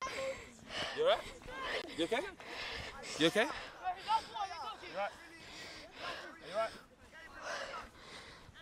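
Young footballers shouting and calling to each other across an open grass pitch, many short overlapping calls with the words unclear.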